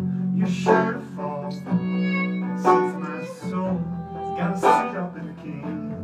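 Acoustic string band playing an instrumental passage: banjo picking with fiddle, acoustic guitar and upright bass. A long note is held about two seconds in.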